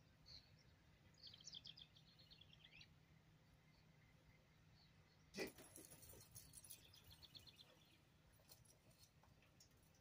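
Faint outdoor quiet in which a small bird chirps in quick trills twice. One short, sharp sound about five and a half seconds in is louder than everything else.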